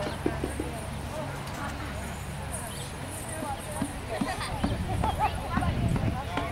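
A couple of last hand-drum strokes in the first half-second, then people's voices talking and chattering from about three seconds in.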